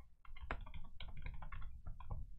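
Chewing and mouth sounds close to the microphone: a quick, irregular run of short wet clicks and smacks while eating chicken.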